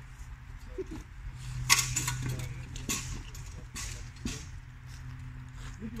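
Wooden training spears clacking against each other and against shields during sparring: a handful of sharp knocks, the loudest about two seconds in.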